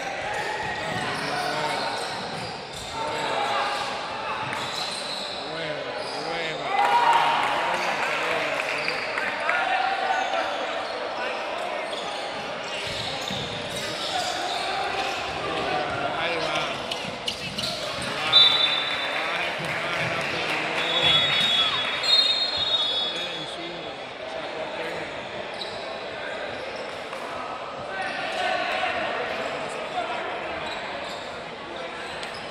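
Sounds of a basketball game in a large gym: the ball bouncing on the court amid the voices of players and spectators calling out, echoing in the hall. The voices swell at a few moments, with one sharp loud peak about two-thirds of the way through.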